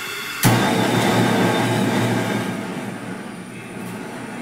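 Gas stove burner being lit with a lighter: a hiss of gas, then a sudden soft whoomp about half a second in as it catches, followed by a steady rush of flame that slowly fades.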